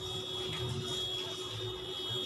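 Small electric hair trimmer running with a steady high whine; it switches on abruptly.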